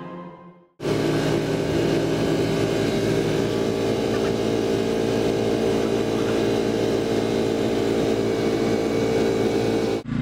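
The electric inflation blower of an inflatable bounce house running, a steady unchanging hum that comes in about a second in, right after a tune fades out.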